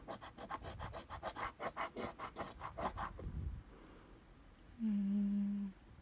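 A coin-like token scraping the silver coating off a paper scratch-off lottery card in quick, even strokes, about six a second, for about three seconds. Near the end a voice hums a short, level 'mm'.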